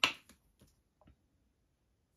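A sharp plastic click, then a few faint ticks within the first second, from a plastic squeeze bottle of acrylic paint being handled.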